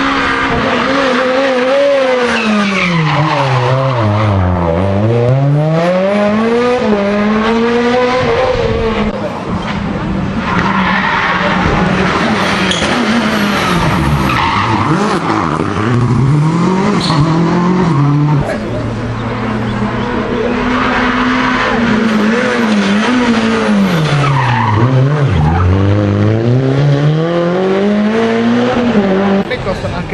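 Rally cars on a tarmac stage passing one after another, among them a Renault Clio RS. Each engine note drops steeply as the car brakes and downshifts into the bend, then climbs through the gears as it accelerates away, with some tyre squeal.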